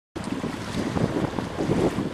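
Wind buffeting the microphone, with the rush of swollen, fast-flowing river water around concrete piers.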